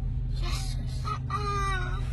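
A rooster crowing: a pitched call that starts about half a second in and ends on a long, slightly falling note, over a steady low hum.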